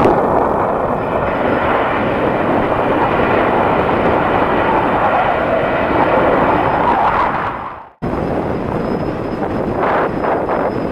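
Jet engines of a Delta Airbus A321 rolling along the runway, a loud, steady noise. It fades away just before a cut about eight seconds in. After the cut comes quieter wind noise on the microphone.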